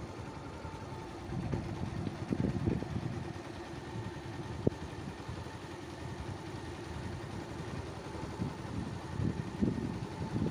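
A small engine running steadily, with low rumbling noise on the microphone that swells at times and a single sharp click about halfway through.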